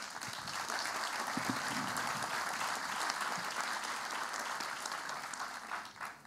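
Large audience applauding steadily, then dying away near the end.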